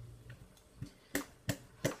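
A VersaFine ink pad dabbed repeatedly onto a large wood-mounted rubber text stamp: about four short sharp taps, roughly three a second, starting a little under a second in.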